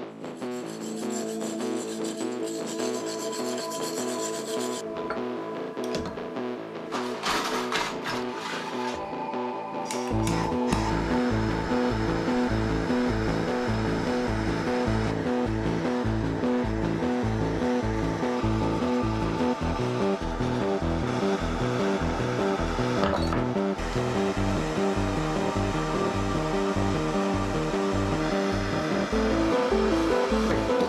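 Background music with a steady beat; a pulsing bass line comes in about ten seconds in.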